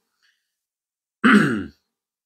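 A man clearing his throat once, briefly, a little over a second in.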